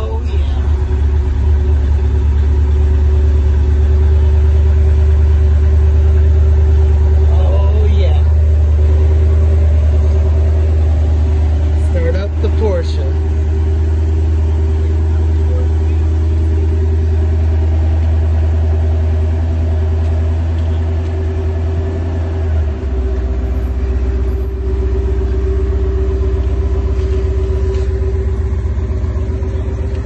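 Porsche 928's V8 idling steadily through its dual exhaust just after startup. Its deep rumble drops a step about three-quarters of the way through.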